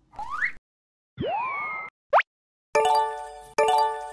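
Added cartoon sound effects. A short rising whistle-like swoop comes first, then a longer swooping tone that rises and levels off, then a very quick upward chirp, the loudest of them. A little before three seconds a bright chiming jingle starts, its phrase restarting about every 0.8 s.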